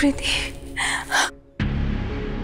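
Dramatic background music holding a sustained drone, with a woman's breathy gasps over it. The music cuts out abruptly about a second and a half in and comes straight back.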